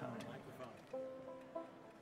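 Acoustic guitar plucked quietly, a few notes struck about a second in and again shortly after, left ringing.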